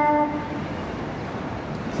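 A woman's voice through a microphone and loudspeakers holds one drawn-out vowel for about half a second, then gives way to steady background noise with no voice for a second and a half.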